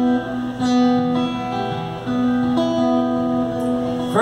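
Acoustic guitar playing a short instrumental passage between sung lines, its chords ringing and changing about every half second.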